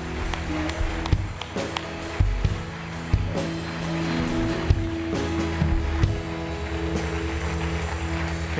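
Church worship band playing without singing: held chords over a steady drum beat.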